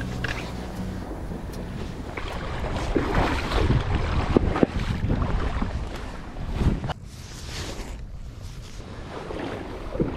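Water splashing and sloshing as someone wades through shallow marsh water, uneven and loudest in the middle, with a couple of sharp knocks. Wind buffets the microphone throughout.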